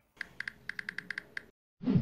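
Rapid computer-keyboard typing, about ten quick keystrokes in just over a second, used as a sound effect for a search query being typed. A short swelling sound follows near the end.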